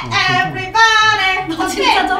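A young woman singing a playful, high-pitched snatch of song, holding one long note in the middle.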